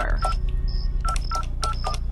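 Payphone keypad touch-tone beeps as a number is dialled: a few short tones in quick succession, a pause, then about five more at a steady pace, over a low steady rumble.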